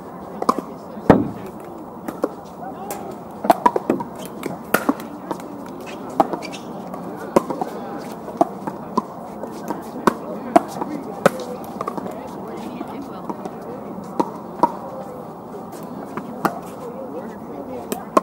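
Pickleball paddles striking plastic pickleballs in sharp, irregular pocks, from this court and neighbouring ones, the loudest hit about a second in. A murmur of distant players' voices runs underneath.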